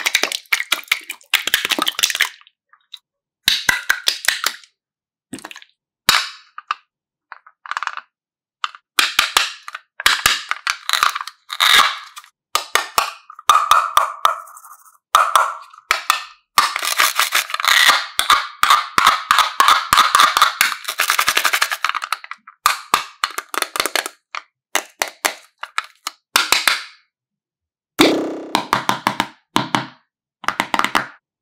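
Slime being squeezed and kneaded by hand, with runs of wet crackling and popping as it is pressed, coming in short spells separated by abrupt silences.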